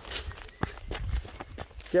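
Footsteps walking along a dirt path: irregular soft thuds.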